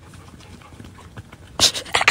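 German Shepherd dog panting softly, then a loud breathy huff near the end.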